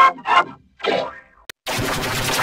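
Edited, effects-processed cartoon logo soundtrack: three short boing-like sound-effect bursts with gaps between them, then a sharp click, and from near the end a dense, continuous run of music.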